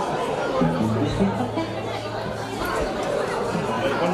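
Live band music with a long held low bass note and a few short stepped notes above it, under crowd chatter.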